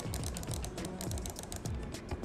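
Ordinary wired computer mouse, its buttons clicked rapidly over and over with sharp clicks, over background music. These are conventional click-noise buttons, the baseline against which the MX Master 3S's quieter clicks are compared.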